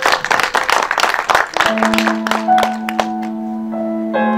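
Audience clapping that thins out over the first two seconds, as the instrumental opening begins underneath with a long, steady low note and then further held pitches.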